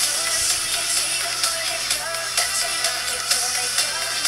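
Electronic K-pop dance track with a steady beat and pitch-corrected female vocals.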